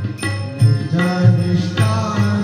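Tabla playing, with sharp strokes on the right-hand drum and deep bass strokes on the left-hand bayan, over sustained held notes of the melodic accompaniment in a Marathi devotional abhang.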